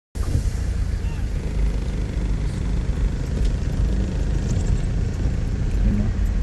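Steady low rumble of a car driving on a wet road, engine and tyre noise heard from inside the cabin.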